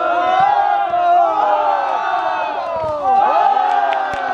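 A small crowd of people shouting and cheering together in long, overlapping yells, easing briefly about three seconds in and then rising again.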